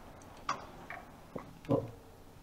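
A lull with room tone and a few faint, separate clicks about a second apart, then a man says a short "What?" near the end.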